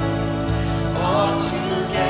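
Live worship music: a band holds slow, sustained low chords while a voice sings a line that glides up and down about halfway through.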